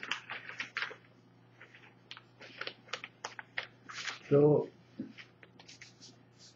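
Sheets of paper rustling and crinkling in irregular bursts of small crackles as a stack of printed pages is handled and leafed through. About four seconds in, a short vocal "uh" that falls in pitch, the loudest sound.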